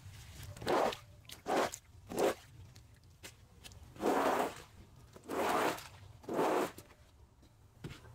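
Hand scrubbing brush drawn across a wet wool rug in six short strokes, three close together and then three more after a brief pause.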